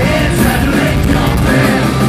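Pirate metal band playing live through a club PA: electric guitars, keytar and drums, loud and steady, with yelled singing over the top.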